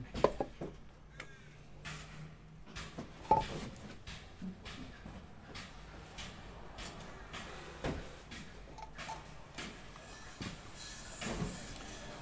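Light handling of a clear acrylic display case and a stack of trading cards: soft rustles with a few sharp plastic clicks and knocks spread through.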